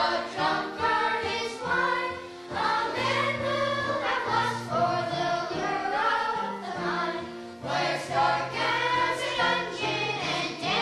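A chorus of children singing a song together in unison.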